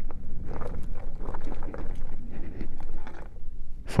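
An electric beach cruiser rolling over a rough gravel-and-dirt track: tyres crunching on loose stones and the bike frame rattling, with wind buffeting the microphone.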